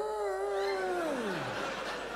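A man's long, drawn-out 'oooh' of mock awe, held on one pitch and then sliding down until it dies out about one and a half seconds in. Audience laughter rises under it.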